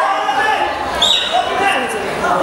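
Spectators' voices shouting and calling out over one another, with a short high-pitched whistle about a second in.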